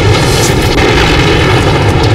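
Loud, steady engine-like drone: a rushing noise with a constant hum of stacked tones through it, like an aircraft engine running.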